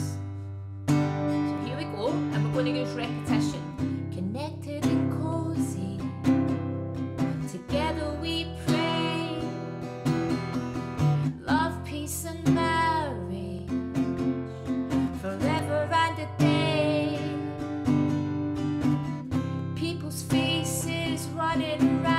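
Acoustic guitar strumming a C, E minor, F, G chord progression, joined a few seconds in by a woman singing a simple, repetitive verse melody.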